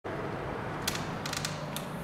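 Quiet indoor room tone with a few light clicks and creaks between about one and two seconds in.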